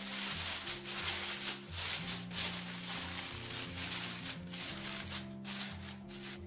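Aluminium foil crinkling and rustling as it is pressed and smoothed down around the rim of a pudding pan, with irregular crackles throughout. Background music with steady low notes plays underneath.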